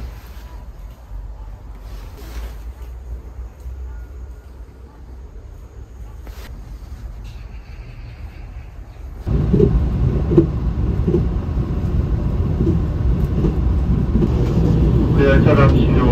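Low room hum with a few faint clicks. About nine seconds in, the running noise of a moving passenger train heard from inside the carriage cuts in suddenly, a loud, steady rumble. Near the end an onboard station announcement begins over it.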